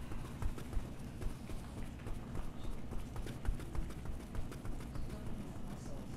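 Several people shaking out their outstretched legs on yoga mats: a run of irregular soft thumps and taps as legs and heels bounce on the floor.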